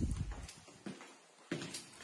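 Footsteps on a hard wood-effect floor: a few steps, roughly half a second apart, with quiet between them.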